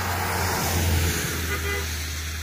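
A car passing on the road, its noise swelling to a peak about a second in and then fading.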